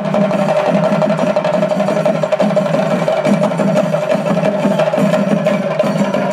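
Chenda melam: an ensemble of chenda drums beaten with sticks in fast, unbroken rolls, with a steady held tone sounding over the drumming.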